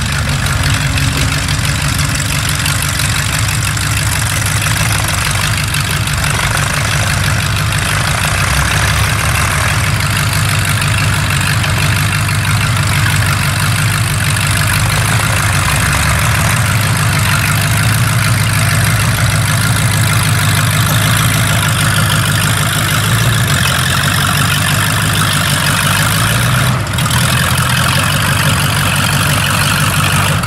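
Vintage tractor engine running steadily and loudly under load while it pulls a plough through the soil.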